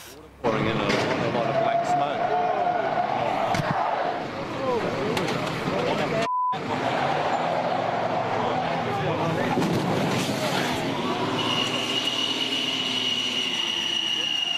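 Outdoor street sound: indistinct voices over vehicle noise. About six seconds in, the sound drops out briefly around a short beep. For the last two to three seconds a steady high-pitched electronic tone sounds.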